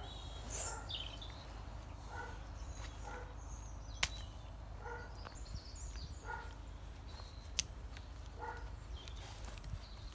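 Faint, short animal calls repeating roughly once a second over a low steady outdoor rumble. There is a sharp click about four seconds in and a louder one about three-quarters of the way through.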